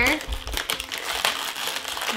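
Clear plastic toy packaging crinkling and crackling as it is squeezed and handled, in a string of short sharp crackles.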